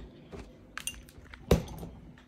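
Light clinks of containers being handled in a refrigerator, then one sharp knock about a second and a half in, the loudest sound, as the fridge door is pushed shut.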